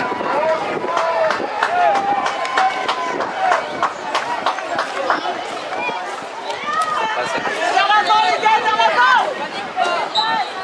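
High-pitched children's voices calling and shouting across a football pitch, several at once, busiest and loudest near the end, with a few sharp knocks among them.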